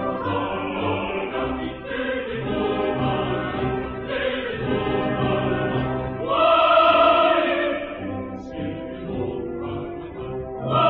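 Opera chorus singing with orchestra, a full held chord swelling louder about six seconds in.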